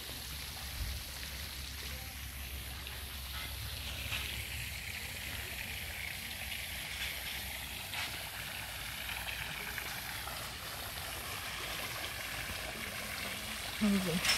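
Steady splashing of small fountain jets falling into a pool, a continuous even rush of water.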